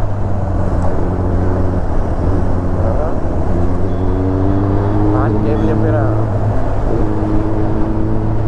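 Kawasaki ZX-10R sport bike's inline-four engine running at a steady cruise, its low hum shifting in pitch a little now and then, under loud rushing wind noise.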